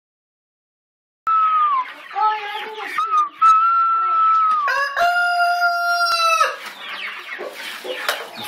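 Rooster crowing. After about a second of silence, a string of shorter, gliding calls leads into one long, clear held note that rises at its start and drops away about a second and a half before the end.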